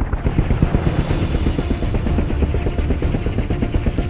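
Helicopter running on a helipad: a rapid, even chop of the rotor blades over the turbine's rumble and a rushing hiss of rotor wash.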